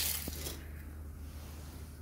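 A low steady hum, with a brief rustle and a faint click of handling at the start.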